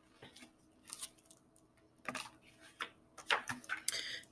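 Faint rustling and light taps from a picture book being handled, with the sounds coming closer together in the second half as the book is lowered and a page is turned.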